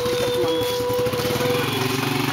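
Small motorcycle engine of a sidecar tricycle idling with an even low putter. A steady held tone sits over it and stops about a second and a half in.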